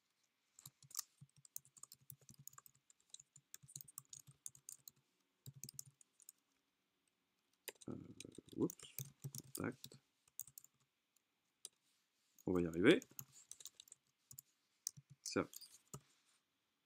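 Computer keyboard typing: quick runs of key clicks through the first six seconds, then sparser clicks broken by short voice sounds.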